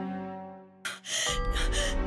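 Background music fades almost to nothing, then a young woman's startled gasp cuts in sharply about a second in, breathy with a brief voiced edge. Music with a deep bass comes back in under it.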